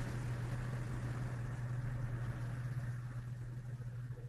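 A steady low hum with a faint hiss on the recording's audio line, fading a little near the end.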